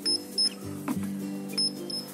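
Paint thickness gauge beeping as it is pressed to the car door: two short high beeps about a third of a second apart near the start, and another pair near the end. Background music runs underneath.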